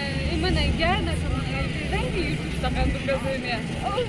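People talking, not close to the microphone, over a steady low rumble.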